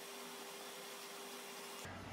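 Faint room tone: a steady hiss with a faint steady hum that stops just before the end. No handling sound stands out.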